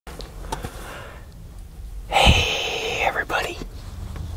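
A man whispering close to the microphone, with a louder breathy stretch in the middle.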